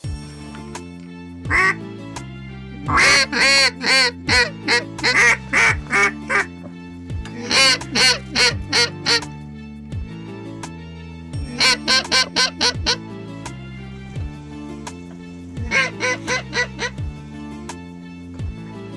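Background music with a steady beat, over which a duck quacks in rapid runs of several calls, five runs in all.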